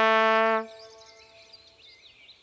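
Trumpet holding one long note that stops about two-thirds of a second in, leaving a faint quiet background.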